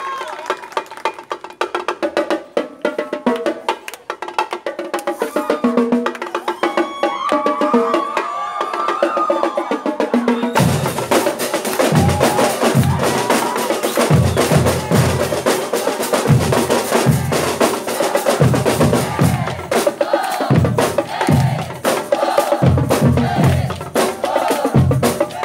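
Marching drum line playing a cadence: quick, lighter snare-drum strokes at first, then about ten seconds in the bass drums come in and the whole line plays loud with regular deep beats under the snares.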